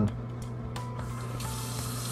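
Bathroom sink tap left running: water streams steadily into the basin with an even hiss, which brightens slightly about a second in.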